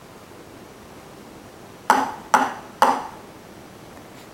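Three sharp knocks about half a second apart, each ringing briefly: a toddler's cup striking a wooden end table.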